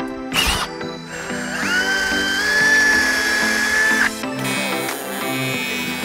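Electric drill boring out a small AN fitting held in a vise, opening up its bore. The motor's whine rises as it spins up about a second and a half in, holds steady for about two and a half seconds and then stops, over background music.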